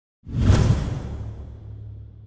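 Whoosh sound effect for a logo animation: it starts suddenly about a quarter second in, peaks at half a second and fades away over a low steady drone.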